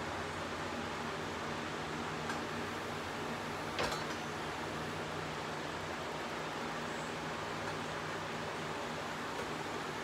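Steady low hum and hiss in the background, with a faint click about two seconds in and a sharper one near four seconds. The clicks come from the miter table of a Hercules 12-inch sliding miter saw being swung through its detent angle stops.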